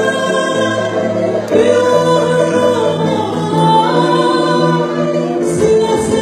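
Music with a group of voices singing together in long held notes, the melody moving from note to note every second or so.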